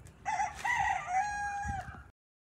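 A rooster crowing once: a couple of short opening notes followed by one long held note that drops at the end, then cut off suddenly.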